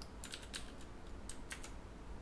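Computer keyboard keys clicking faintly in a quick, uneven run of presses, dying away near the end.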